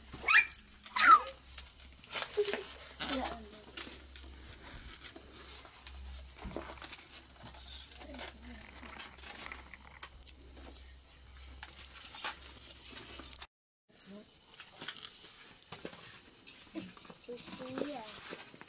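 Children's voices in short calls and chatter, with scattered rubbing, squeaking and crinkling from rubber modelling balloons being handled.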